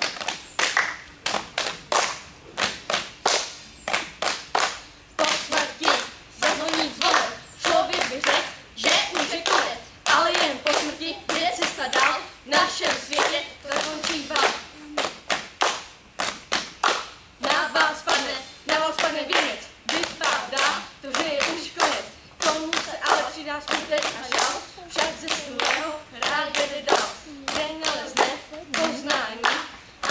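A group clapping hands in a steady rhythm, a few claps a second, with voices singing along.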